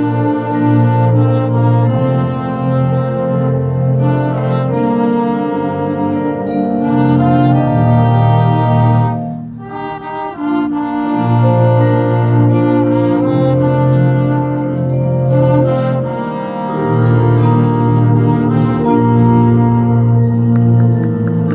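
A high school marching band's brass section playing long, held chords, with a short break about halfway through before the full brass comes back in.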